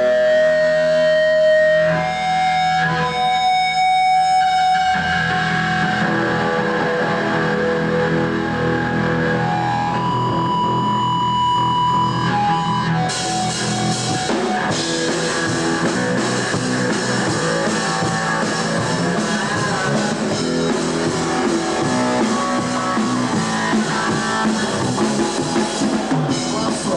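Live rock trio playing a song: electric guitar and bass hold ringing notes at first, then the drum kit comes in with cymbals about halfway through and the full band plays on.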